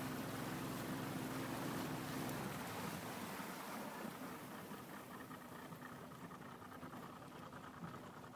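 A small boat's motor running with a steady hum, which dies away about two and a half seconds in, leaving a faint steady hiss.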